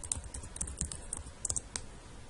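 Computer keyboard typing: a short, irregular run of key clicks as a word is typed.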